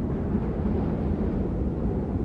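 A steady low rumble of noise, even throughout, with no clear tone or rhythm.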